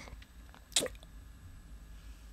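A single short wet mouth click, a lip smack close to the microphone, a little under a second in, over quiet room tone.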